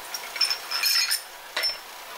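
Small porcelain tea cups clinking against each other as they are set out on a bamboo tea tray: a few light clinks with a short high ring, bunched together about a second in.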